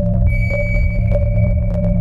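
Electronic music track: a steady low bass drone with light ticking percussion, and a high, pure synth tone like a sonar ping that comes in just after the start and holds.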